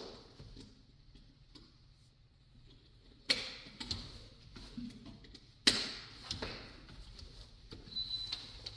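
A stuck sliding glass patio door being tugged without opening: two sharp knocks of the door jolting in its frame, about three and five and a half seconds in, with light rattles and clicks between.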